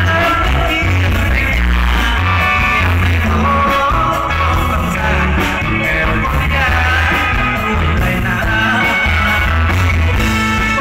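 A man singing through a microphone with a live band: amplified vocal over electric guitar, electric bass and keyboard, with a bass line under it.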